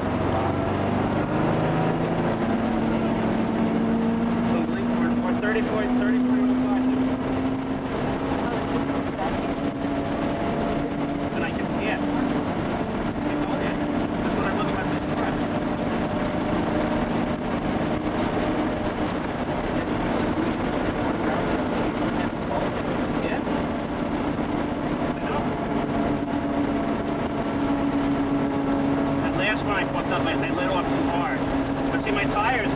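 Porsche 930 Turbo's air-cooled turbocharged flat-six heard from inside the cabin under load at track speed. Its pitch rises over the first several seconds, then holds fairly steady with small rises and dips.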